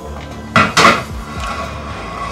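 Dishes and cutlery clattering: two loud, sharp clatters close together about half a second in.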